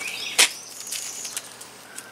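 Birds chirping outdoors in short, high, gliding notes, with one sharp click about half a second in and a fainter one later.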